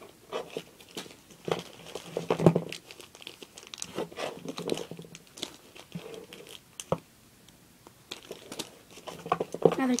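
Small clear plastic bag crinkling as it is handled, a run of irregular crackles, loudest about two and a half seconds in.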